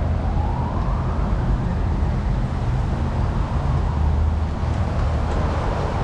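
A distant siren wailing, one slow rise in pitch and then a slow fall, over a steady low rumble of traffic.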